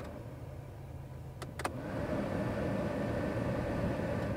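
Two quick clicks of the fan lever on a 1984 GMC Caballero's heater/AC panel, then the air-conditioning blower speeds up and air rushes steadily from the dash vents over the low hum of the idling engine; the AC is blowing ice cold.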